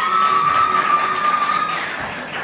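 Audience noise with one long, steady high-pitched tone held for nearly two seconds that stops shortly before the end.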